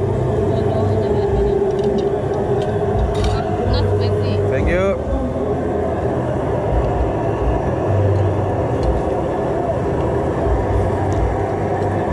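Indistinct chatter of several voices over a steady low hum, with a few light clicks and a brief rising vocal sound about five seconds in.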